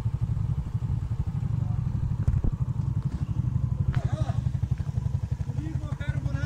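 Motorcycle engine idling with a steady, rapid low putter, plus a couple of sharp clicks a little over two seconds in.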